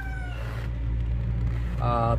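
A steady low rumble runs throughout. The end of a held, slightly falling pitched call fades out within the first half second.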